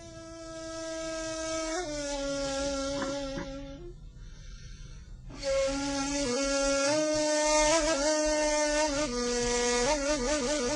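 Ney reed flute playing a slow improvised taksim: long, breathy held notes, a pause for breath about four seconds in, then more held notes stepping up and down in pitch, ending on a lower note.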